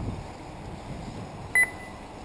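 A short electronic beep about one and a half seconds in: two quick high pips that trail off into a brief fading tone. Under it is a steady low outdoor rumble.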